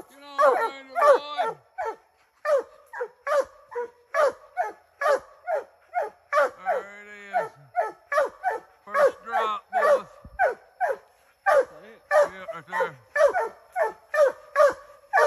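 Treeing Walker coonhounds barking treed at the base of a tree: a steady run of short chop barks, about two a second, with one long drawn-out bawl about seven seconds in. The barks overlap in places, as from more than one dog. The dogs are signalling that they have game up the tree.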